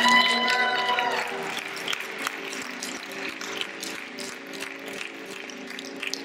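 A last held note dies away in the first second, then light, scattered clapping from a small audience.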